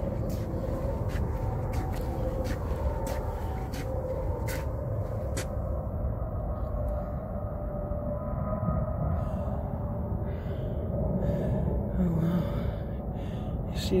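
Steady low rumble of wind on a phone's microphone, with a string of light clicks and taps in the first five seconds or so as the phone is handled against a window pane.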